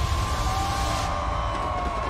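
A stadium crowd's roar under the deep rumble of fireworks, with one high steady tone held throughout. A hiss over the top cuts off about halfway through.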